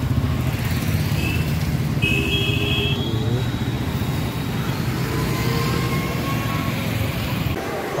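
Roadside traffic on a wet city street: motorcycles and cars passing, with a steady low rumble. It stops abruptly just before the end.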